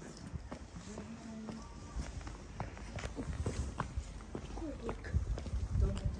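Footsteps clicking irregularly on stone paving, with faint voices of passers-by.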